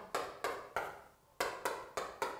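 Chalk tapping against a chalkboard as short strokes are written: about six quick knocks in two groups of three.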